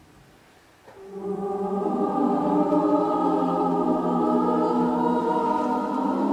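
Mixed choir of men's and women's voices singing: after a near-silent pause, the choir comes in about a second in and sings sustained chords.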